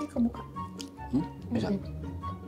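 Light background music with short wordless vocal sounds from the eaters. Under them is wet squishing of sauce-covered seafood being picked apart by hand.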